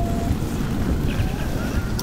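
A steady low rumbling background ambience from the drama's sound design, with a short steady tone right at the start and a few faint short tones in the second half.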